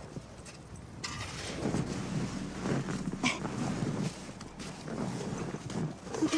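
Snow being dug and scraped away by hand and by a golden retriever at the mouth of a snow cave: a run of rustling scuffs with a sharp knock about three seconds in.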